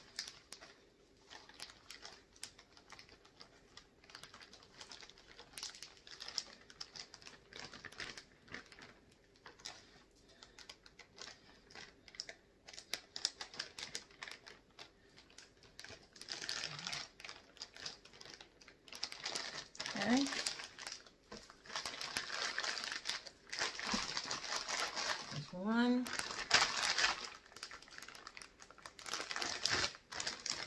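Plastic zipper-top freezer bags crinkling and rustling as they are handled and pressed shut, with small clicks from the zipper seal. The rustling grows busier over the last third, with two short rising squeaks.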